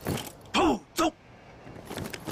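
A drill command shouted to a squad of soldiers in formation, in two parts: a long call falling in pitch, then a short clipped one. A soft knock of boots comes just before it.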